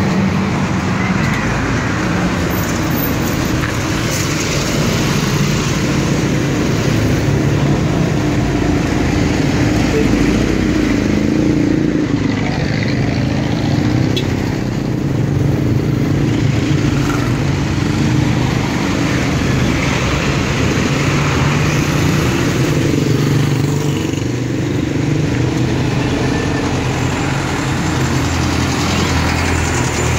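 Street traffic: the engines of cars and a bus running and passing close by, a steady rumble throughout.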